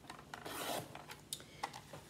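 Scrapbook paper scraping on a paper trimmer, one short rasp about half a second in, followed by a few light clicks as the sheet is handled.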